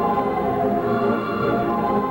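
Mighty Wurlitzer theatre pipe organ playing a snappy tune in full, many-voiced chords at a steady, loud level.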